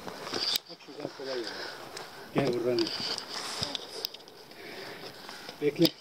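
Short snatches of voices in three brief bursts, with a few sharp knocks and rustles between them from people scrambling over grass and rock.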